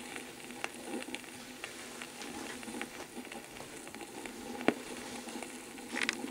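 Surface noise of a red flexi-disc (sonosheet) record playing on a turntable with no programme left on it: a steady hiss with scattered crackles and clicks, one sharper click near the end and a burst of louder clicks at the very end.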